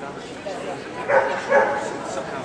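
Small dog barking twice in quick succession while running an agility course, over a background of voices in a large hall.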